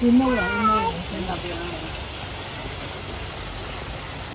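A person's voice gives a short, drawn-out call with a wavering pitch in the first second, followed by steady outdoor background noise.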